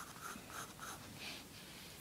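Pencil drawing a curved line on paper: faint scratching in a few short strokes, mostly in the first second and a half.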